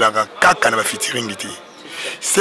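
A man speaking into a handheld microphone, his words cut into short phrases.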